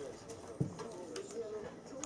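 A Bernese Mountain Dog's footsteps, its claws tapping on the floor as it turns about, with one dull thump about half a second in.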